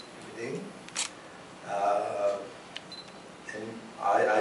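Short phrases of speech with pauses between them, and a sharp click about a second in.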